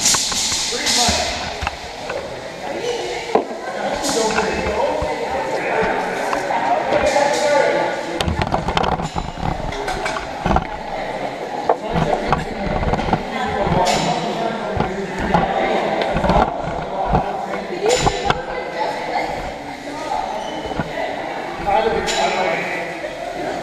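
Background chatter of many voices in a large, echoing gym, with scattered thuds and knocks throughout and a run of low thumps in the middle.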